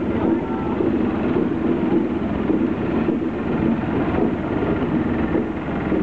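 A small garden tractor's engine running steadily as it drives slowly past close by, with crowd chatter underneath.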